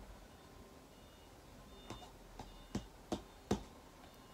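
A quiet room, then five light knocks or taps in quick succession in the second half, each louder than the one before.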